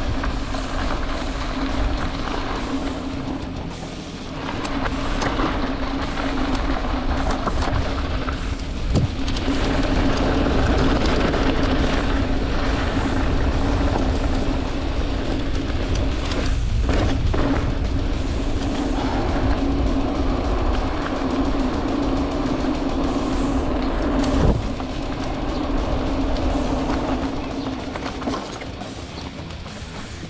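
Mountain bike ridden fast on dirt: wind rushing over the camera mic and knobby tyres rumbling on loose ground, with a steady buzzing tone that drops out briefly a few times, typical of a freewheeling rear hub while coasting. A sharp knock stands out about three-quarters of the way through, as the bike hits a bump.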